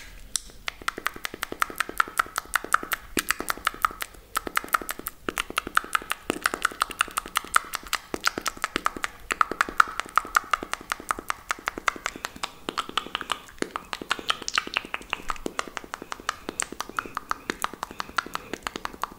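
Rapid ASMR mouth sounds made into a cupped hand close to a microphone: a fast, unbroken run of sharp mouth clicks and pops, several a second.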